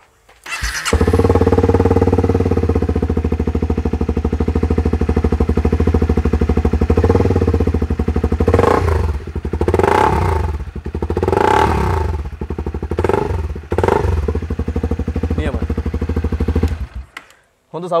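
Honda CRF250L's single-cylinder 250 cc engine started about half a second in and idling steadily. From about eight to fourteen seconds in the throttle is blipped several times, each rev rising and falling back to idle. The engine is switched off near the end.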